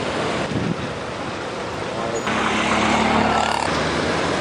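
Street sound of trucks and road traffic, a steady rushing noise with faint voices in the background. It gets louder a little past two seconds in, with a low engine hum.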